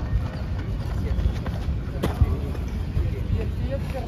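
Indistinct voices of a group of people talking over a steady low rumble, with a single sharp tap about two seconds in.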